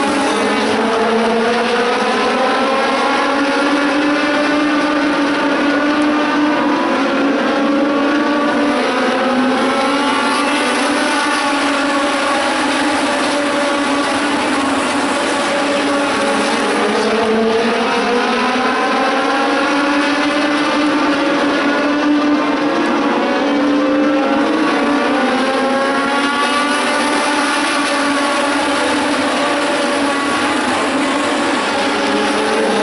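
A pack of Legends race cars at full race speed, their Yamaha four-cylinder motorcycle engines running hard. Several engine notes overlap, their pitch dipping and climbing together every few seconds as the cars lift for the turns and accelerate down the straights.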